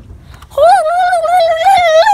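A boy's voice holding one long, high note that wavers slightly in pitch, starting about half a second in.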